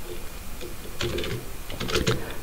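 Computer keyboard being typed: a quick run of key clicks about a second in and a few more near the end.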